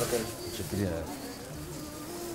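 A brief low murmur from a man's voice, dropping in pitch, about half a second in, over a steady low hum.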